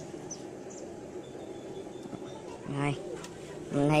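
A steady low background hum with a few short, high bird chirps in the first second. A brief voice sound comes just before the end.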